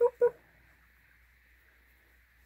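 Two short, quick voice sounds right at the start, a quarter-second apart, then quiet room tone with a faint steady hiss.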